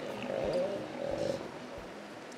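An animal's wavering call, about a second long, over faint outdoor background noise.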